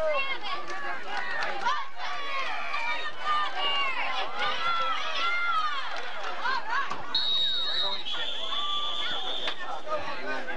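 Spectators' voices calling and talking over one another at a football game. About seven seconds in come two steady, high whistle blasts, the second slightly lower and longer: referees' whistles blowing the play dead.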